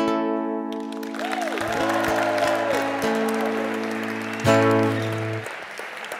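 Steel-string acoustic guitar: a final strummed chord rings out, and a second chord is strummed about four and a half seconds in and rings for about a second. Audience applause builds from about a second in and continues under the guitar.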